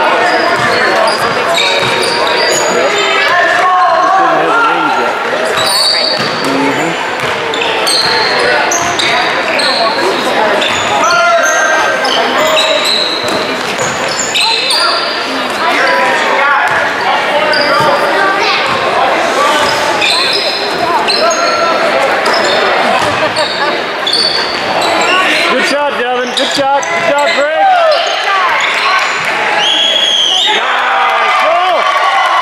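Basketball game in play on a hardwood gym court: a basketball bouncing and sneakers squeaking in short, high chirps, over a steady murmur of voices and shouts from players and spectators, echoing in the large gym.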